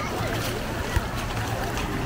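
Beach ambience: small waves washing up the shore with the voices of many bathers, over a low rumble of wind on the microphone. A short thump about a second in.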